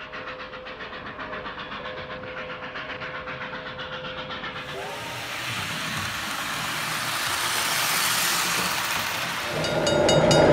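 Toy train running on a model layout, with a rhythmic clatter of about five or six beats a second over a faint steady tone, then a fuller running noise that builds through the second half.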